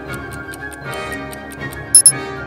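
Countdown-timer ticking sound effect, quick even ticks about six a second, over background music. Right at the end a loud, short, bright electronic tone sounds as the timer runs out.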